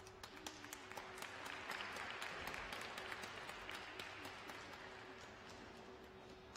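A small crowd applauding in an ice rink, with individual hand claps standing out. The clapping builds for about two seconds, then thins and fades.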